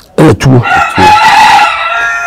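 A rooster crowing: one long call lasting about a second and a half, starting about half a second in, just after a brief burst of a man's speech.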